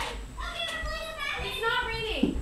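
Children's high-pitched voices chattering and playing in the background.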